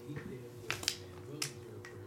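A few sharp, unevenly spaced computer-mouse clicks while a random draw is run.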